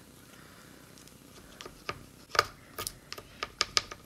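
Small, irregular clicks of a guitar pick and fingernails against a bass body's gloss finish as bits of sticker are picked and peeled off, starting about a second and a half in.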